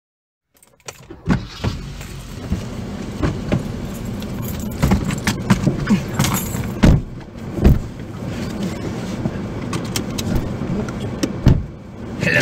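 Car interior noise with the engine running, a steady low rumble, overlaid by frequent sharp clicks, knocks and rattles from handling things in the cabin. It starts abruptly about half a second in.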